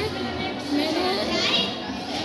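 Children's voices chattering, with background music.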